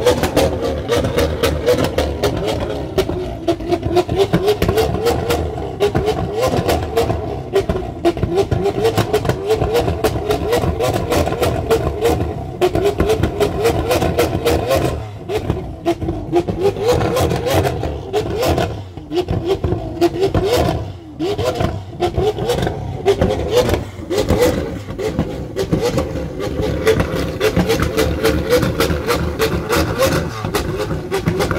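Lamborghini Aventador SV's V12 running at low speed, its exhaust note rising and falling, with a brief lull twice in the middle.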